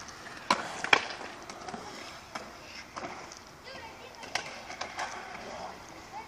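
Skateboards on concrete: wheels rolling with sharp clacks of boards hitting the ground, two loud ones about half a second apart near the start, then scattered lighter ones.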